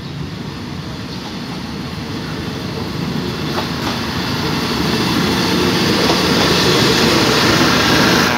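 Diesel railcar express train approaching and passing close by, the sound of its diesel engines and wheels on the rails growing steadily louder as it comes alongside.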